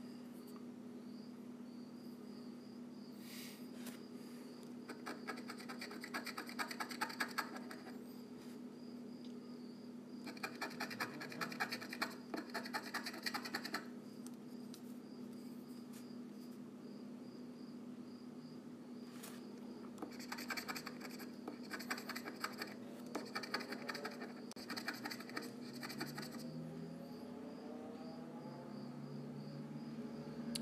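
A scratch-off lottery ticket being scratched, its coating rubbed away in several spells of rapid strokes lasting a few seconds each, over a steady low hum.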